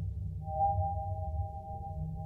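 Slow ambient soundtrack music: two held high tones that swell anew about half a second in, over a low rumbling drone.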